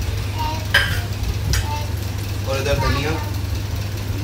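Metal spoon and steel bowl clinking against a kadai of dal makhani as paneer is added and stirred in, two sharp clinks about a second apart, over a steady low hum.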